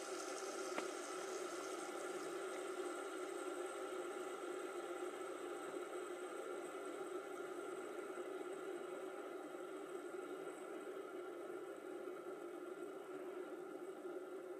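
Faint, steady whir of fidget spinners spinning on their bearings, slowly fading, with one light tick about a second in.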